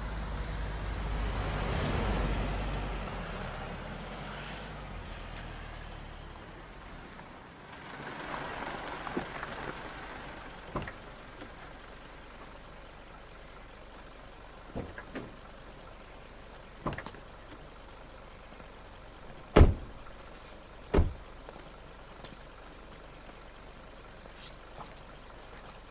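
A motor vehicle passing, growing louder and then fading, followed by a second fainter pass. Then a few scattered sharp knocks or thuds, the two loudest close together near the end.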